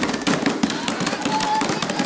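Several children slapping and banging their hands on a cloth-covered tabletop, a rapid, irregular run of many sharp slaps, with children's voices mixed in.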